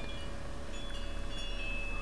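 Steady low background hum with a few faint, thin, high-pitched tones that come in about half a second in; no distinct click or event stands out.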